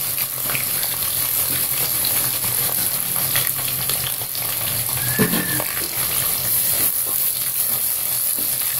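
Sliced onions sizzling and crackling in hot oil and ghee in a steel pressure pan as they are tipped in, a steady hiss dotted with small pops.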